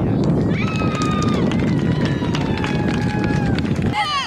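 Wind buffeting the microphone in a steady low rumble, with long drawn-out high-pitched shouts over it, one sliding slowly down in pitch.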